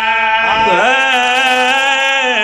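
A man singing a devotional qasida, sliding down into a long held note about half a second in and holding it with a wavering vibrato, over a steady sustained drone.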